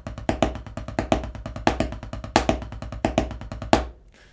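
Drumsticks playing a six-stroke roll (right, left, left, right, right, left) on a Revolution Drum Chopping Block practice pad: a fast, even stream of strokes with a louder accent about every two-thirds of a second. The playing stops shortly before the end.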